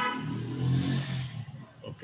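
A motor vehicle going by, its engine a low hum that swells near the middle and then fades.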